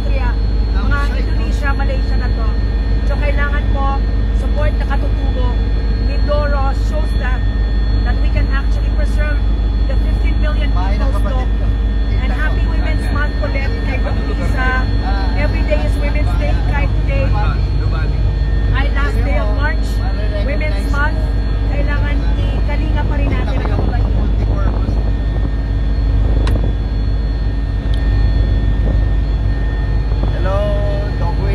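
Helicopter heard from inside the cabin: a loud, steady low drone from the engine and rotor, with a few steady whining tones running through it.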